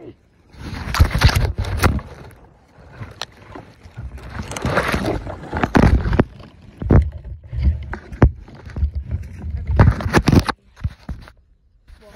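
Clothing rubbing and brushing against a phone's microphone in loud, irregular bursts as the person scrambles through brush, with pauses between the bursts.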